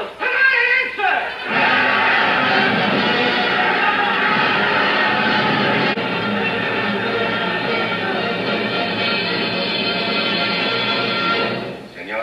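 Film soundtrack played from a 16mm print, thin and cut off in the highs: a voice for about the first second and a half, then dense orchestral score that runs steadily on until it drops away just before the next speech.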